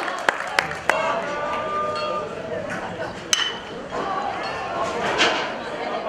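Spectators chattering, with a metal baseball bat striking the ball about three seconds in: one sharp ping with a short ringing tone. The crowd noise swells a couple of seconds after the hit, and a few sharp clicks come in the first second.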